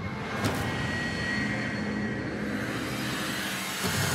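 Cinematic logo sound effect: a steady, dense rumbling swell with a swish sweeping through it about half a second in and another rise near the end.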